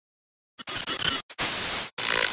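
Harsh static-noise glitch sound effect for an animated logo intro, starting about half a second in and cutting out briefly twice.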